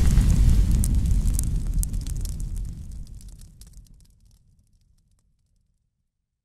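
Cinematic fire sound effect for a flaming logo reveal: the tail of a deep boom, rumbling with scattered crackles like burning fire, dies away and is gone about four seconds in.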